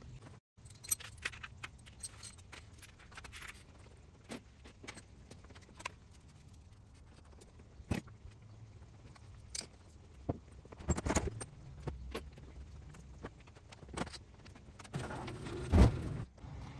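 Hand tools being picked up and gathered: scattered metallic clinks and clatter at irregular intervals, with a louder bout of clattering about two-thirds of the way through and a knock near the end.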